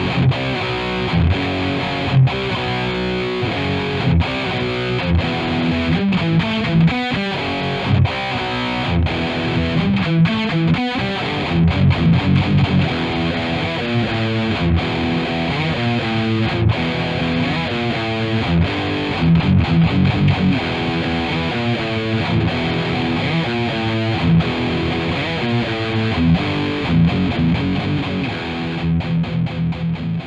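Grover Jackson Soloist electric guitar with twin Seymour Duncan humbuckers, played with distortion: fast rock/metal riffs and lead lines with picked notes and chords. The playing fades out near the end.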